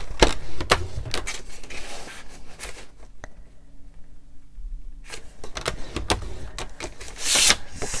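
Paper trimmer fitted with a scoring blade being worked to score cardstock: clicks and knocks of the plastic head and rail, with the card being slid along, in two bouts with a quieter stretch between. A brief swish of card near the end.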